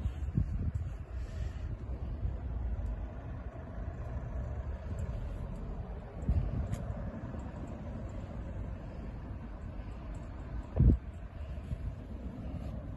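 Low rumble and handling noise from a hand-held phone being moved around inside a car, with a few light knocks and one loud thump near the end.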